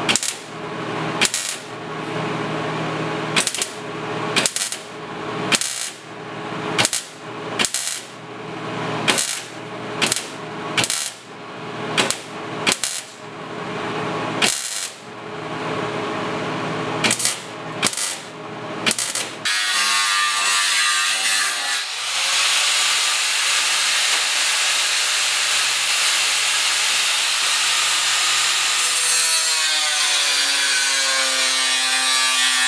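Welder laying a run of short tack welds, about one a second, stitching a steel patch panel into a rusted car trunk floor. At about twenty seconds this gives way to an angle grinder grinding steel, running steadily.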